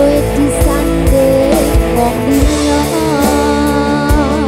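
A live dangdut koplo band playing a song: a wavering melody line over sustained notes and a low, thumping beat that recurs every half-second or so.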